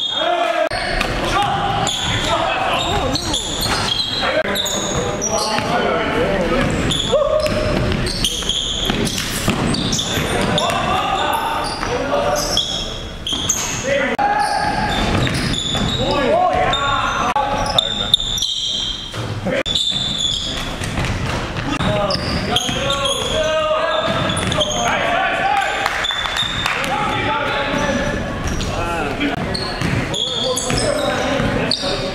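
Game sound of an indoor basketball game: the ball bouncing on the hardwood floor and players' voices, shouts and calls echoing in the gymnasium.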